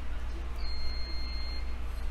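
A steady low hum with a faint high-pitched electronic tone that sounds for about a second in the middle.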